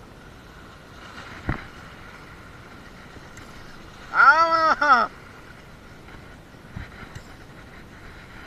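A man's drawn-out vocal exclamation, rising and falling in pitch for about a second, midway, over a steady hiss of wind and sea. A single sharp knock comes about a second and a half in.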